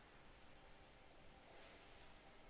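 Near silence: room tone, with a faint brief rustle near the end.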